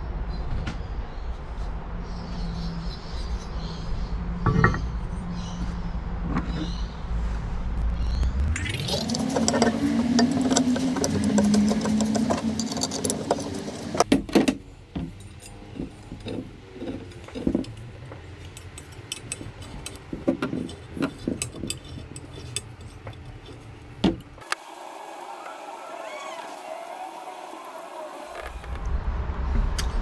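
Aluminium two-stroke engine crankcase halves and a finned cylinder being handled and set down on a workbench: scattered metal clinks and knocks, over a low hum for the first several seconds.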